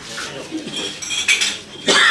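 A few sharp knocks and clinks of hard objects, the loudest two about a second and a half in and again near the end.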